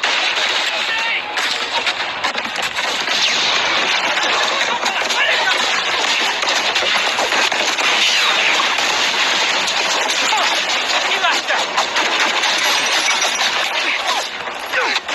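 Film battle soundtrack: dense, continuous automatic gunfire in a forest firefight, with voices shouting under it.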